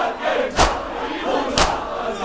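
Crowd of men doing matam, striking their chests with open hands in unison about once a second, with many voices chanting between the strikes.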